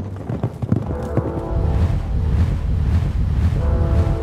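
Hoofbeats of a herd of horses galloping, mixed under a loud orchestral film score. A deep low rumble builds about a second and a half in.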